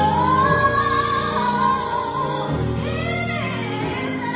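A singer's long, sliding sung notes over keyboard and bass chords, played through a hall's sound system. The voice rises into a held note at the start and sings another phrase about three seconds in.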